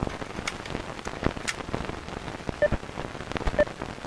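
Rain sound effect opening the track: steady patter with scattered sharp drops. Short soft tones sound about once a second in the second half.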